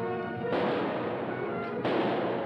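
Two gunshots, one about half a second in and one near the end, each with a lingering echoing tail, over a dramatic orchestral film score on an old mono soundtrack.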